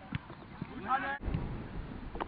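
A player's shout on a football pitch, with a short thud of the ball near the start. The sound cuts off abruptly a little past a second in and comes back with a low rumble.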